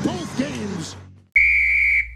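Intro music fades out over the first second, then after a brief silence a single steady, high whistle blast sounds for under a second.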